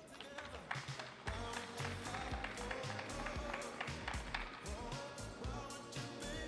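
Music with a steady, punchy drum beat over the arena's sound system, the beat coming in about a second in.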